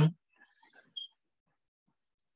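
A man's voice finishing a word right at the start, then near quiet with a faint, short click about a second in.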